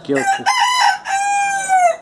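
A rooster crowing once: a broken opening phrase followed by a long held note that drops slightly at the end.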